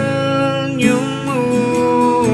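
Acoustic pop song: a male voice holding long sung notes that slide from one pitch to the next, over acoustic guitar.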